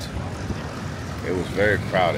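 A man's voice talking over a steady low rumble, with the talk strongest in the second half.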